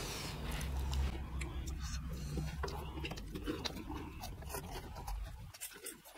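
People chewing fried cheese balls, with scattered small clicks of wooden chopsticks against steel plates.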